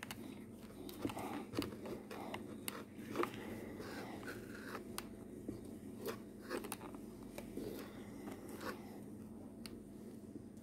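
Steam iron being pushed and pressed over a crochet lace motif on a cloth-covered board: soft scraping of the soleplate and fabric, with scattered light clicks.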